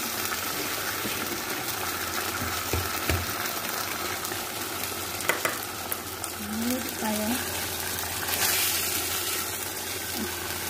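Raw chicken pieces in barbecue-sauce marinade frying in a nonstick pan: a steady sizzle with a few soft knocks. The sizzle swells briefly about eight and a half seconds in.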